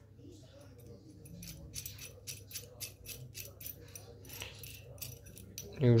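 Light, irregular metallic clicks and clinks of a brass threaded insert and a steel threaded stud being handled and screwed together by hand.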